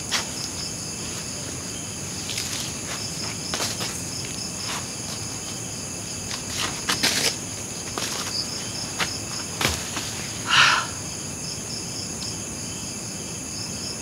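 A steady, high-pitched chorus of night insects such as crickets, with scattered rustles and light knocks from someone moving over dry banana-leaf litter and sitting down. A brief louder noise comes about ten and a half seconds in.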